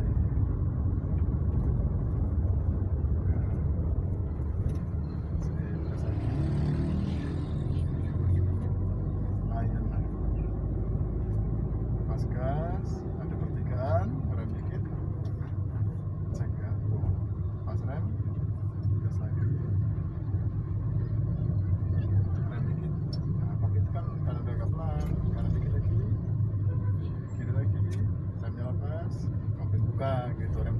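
Steady low engine and road rumble heard from inside the cabin of a manual-transmission Daihatsu car driving slowly.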